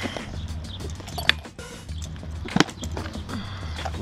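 Snap-on lid of a plastic food-storage container being pried open, with two sharp plastic clicks about a second apart. Quiet background music plays underneath.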